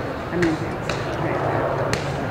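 Background chatter of an outdoor crowd, with three sharp smacks of elbow and knee strikes landing on a hand-held striking pad.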